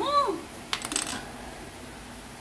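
A brief cluster of light clicks about a second in, from small hard objects knocking together.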